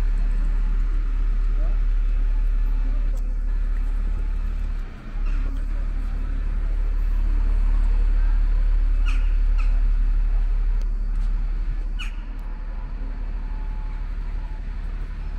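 Town street ambience: a loud, steady low rumble of traffic and wind, with indistinct voices of passers-by and a few short sharp sounds about nine and twelve seconds in.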